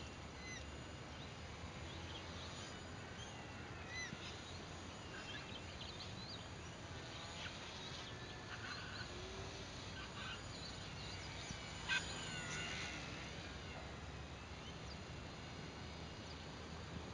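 Wild birds calling: short chirps and whistles scattered throughout, with the loudest, sharp call about twelve seconds in.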